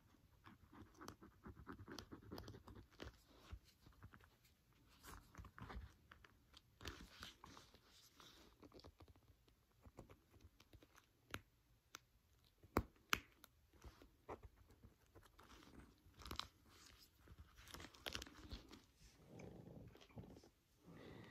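Faint crunching and scratching of a hobby knife blade cutting through foam weather stripping around a metal snap, with a few sharper clicks.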